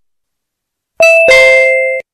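About a second of silence, then a two-note electronic chime: a higher note followed a moment later by a lower one, both ringing on until they cut off near the end. It works as a transition sting marking the move to the next section of the lesson.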